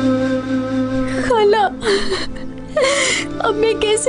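Sad background music holding sustained chords. About a second in, a woman starts sobbing over it: wavering, broken crying with sharp gasping breaths.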